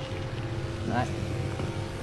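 Electric pump of a car air-conditioning evaporator-cleaning machine running with a steady hum, pushing chemical cleaning solution at high pressure through a spray wand onto the evaporator core.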